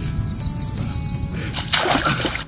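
A small bird gives a quick run of about eight short, high, falling chirps in about a second, over a steady low rumble. Near the end comes a short burst of splashing in shallow water.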